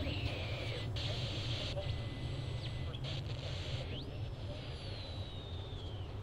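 Eerie ambient drone: a steady low rumble under a high hiss, with thin whistling tones that glide. Near the start one whistle falls briefly; about four seconds in another rises sharply and then sinks slowly over two seconds.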